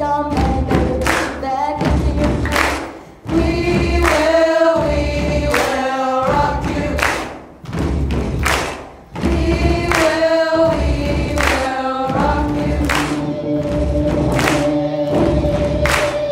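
A large group of young voices singing a rock song together with a band, over a heavy thumping beat and hand claps. The sound drops away briefly about three, seven and a half, and nine seconds in.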